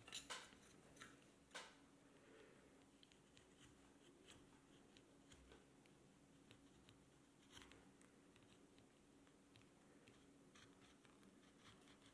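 Faint, short scraping cuts of a narrow carving gouge pushed along a wooden spoon handle to cut fine decorative grooves. The clearest strokes come in the first two seconds, then a few fainter ones.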